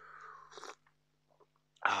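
A man's faint, breathy mouth sound, falling in pitch over the first second, then near silence until a short spoken "ah" at the end.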